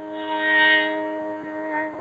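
A woman singing Hindustani classical music, holding one long, steady note after an ornamented phrase. The sound comes thin, through a video call.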